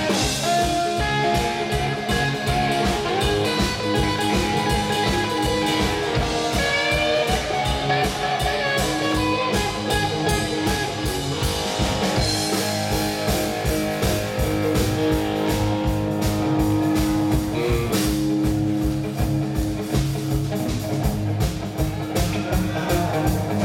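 Live band playing an instrumental passage: electric guitar, acoustic guitar and bass over a drum kit keeping a steady beat, with no vocals.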